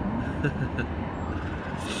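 Steady low rumble of city street traffic, with a faint siren beginning to rise near the end and a short hiss just before the end.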